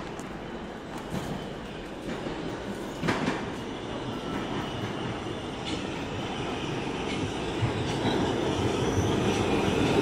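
An R68A subway train running into the station, its sound growing steadily louder through the second half, with a sharp click about three seconds in.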